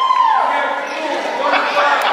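Basketball bouncing on a hardwood gym floor among shouting voices of players and spectators, with a loud call at the start.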